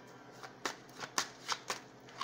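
A tarot deck being shuffled by hand: a quick run of about five sharp card snaps starting about half a second in.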